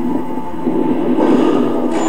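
Soundtrack of a horror TV commercial played through a TV speaker: a dense rumbling, rushing sound effect that swells higher near the end, with a laugh at the start.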